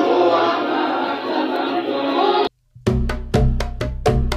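Many voices of a crowded gathering, cut off abruptly about two and a half seconds in. After a brief silence, an electronic music jingle starts: a quick, even run of sharp percussive hits, about four a second, over a deep bass.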